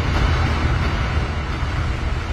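A steady low rumbling noise, like wind.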